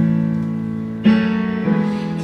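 Piano sound from a Yamaha S90XS stage keyboard playing slow held chords, with a new chord struck at the start and another, louder one about a second in.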